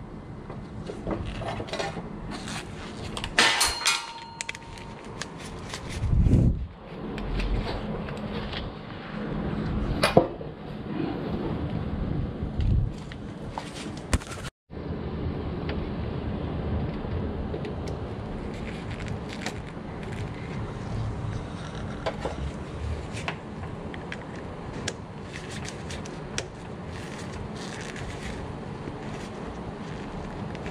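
Handling noise from gloved hands working a GFCI/AFCI circuit breaker and its wires: scattered clicks, taps and rustles of plastic and metal. A sharp click comes about three and a half seconds in, and a low thump about six seconds in. After a brief dropout midway, only steady background noise with faint ticks remains.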